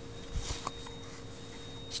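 Faint metal-on-metal handling as an Allen wrench pushes the trigger-group pin out of a Remington 597 receiver: a soft scrape and then a light click within the first second, over a steady faint hum.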